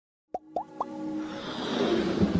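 Intro sound effects for an animated logo: three short plops, each sliding upward in pitch, about a quarter-second apart, then a swelling rise of electronic music that grows louder.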